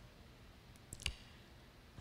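Two short, faint clicks about a second in, the second one louder, over quiet room tone picked up by a handheld microphone.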